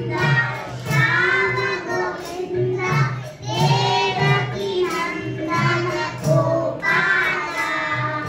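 Group of young children singing a Hindi Krishna bhajan together into microphones, about the child Krishna stealing butter, over a steady low beat that pulses about three times a second.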